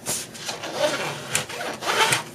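A bone folder rubbing back and forth over paper, burnishing a pocket down onto double-sided score tape: a scratchy rubbing with a couple of sharper clicks near the end.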